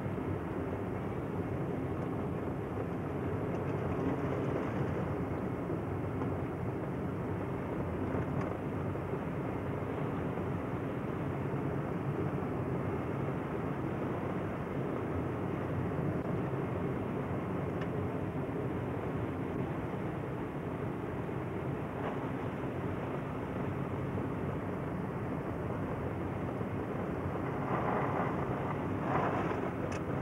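Steady engine and tyre noise inside a moving car's cabin, driving on a hail-covered road.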